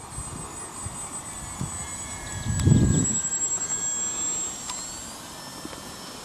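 Electric motor and propeller of a ParkZone F4U Corsair RC model plane flying overhead: a thin high whine that drifts slightly down in pitch, then rises again near the end. A brief low rumble is the loudest thing about two and a half seconds in.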